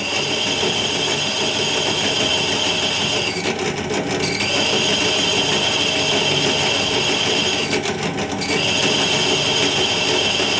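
Bench drill running with a 6 mm diamond-coated bit grinding through a wetted ceramic plate: a steady, high-pitched grinding. The high grinding note drops out twice for about a second, a little after three seconds in and again near eight seconds.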